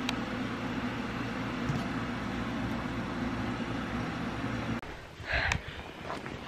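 A steady low mechanical hum, as of a motor running, that cuts off suddenly about five seconds in.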